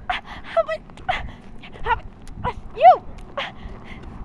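A girl's short, squeaky, breathy giggles and yelps in a row, ending in a loud drawn-out "ew".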